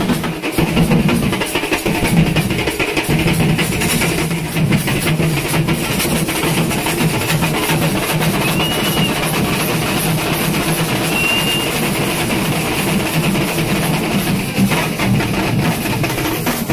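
Live stick drumming on barrel drums, a fast steady beat, with hand cymbals clashing along.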